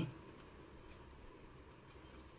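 A pen writing faintly on lined notebook paper.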